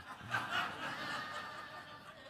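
Laughter from a live audience after a joke, fading away over the two seconds.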